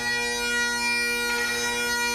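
Great Highland bagpipes played by a lone piper: the drones hold one steady note under the chanter's melody, which moves to a new note about halfway through.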